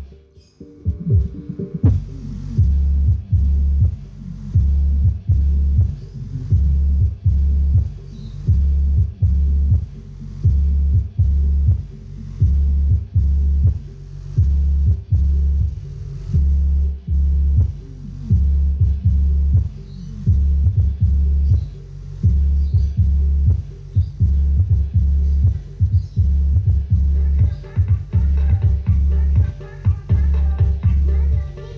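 A song played through the subwoofer output of a home-built XBR mono tone control, its vocals filtered out. What is heard is only deep, throbbing bass beats, about one a second, with no voice.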